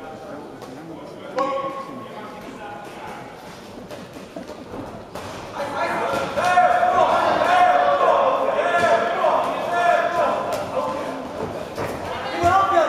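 Shouting voices in an echoing sports hall, sparse at first, then several voices calling at once and much louder from about halfway, as the two boxers trade punches, with a few dull thuds among them.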